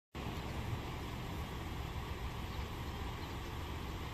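Steady outdoor street noise: a low, uneven rumble with hiss, and no distinct events.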